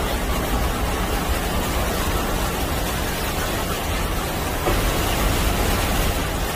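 Steady hiss of a small fountain's water bubbling and splashing on a stone ledge, over a low rumble.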